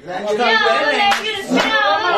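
Hand claps among lively voices calling out, a couple of sharp claps standing out about a second and a second and a half in.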